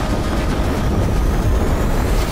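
Film sound effects of a vehicle crash: a loud, dense low rumble and grinding as the yellow car tumbles and slides across the road.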